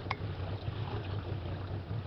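Small boat's motor running steadily at slow cruising speed, a low hum, with water washing along the hull. A short click comes just at the start.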